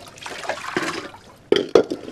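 Water running from an outdoor tap and splashing into a plastic basin, with a few sharp knocks of the basin against the tap near the end.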